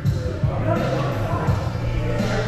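Dull thuds of bodies, hands and feet on the training mats during grappling, several in two seconds, over background music and voices echoing in a large hall.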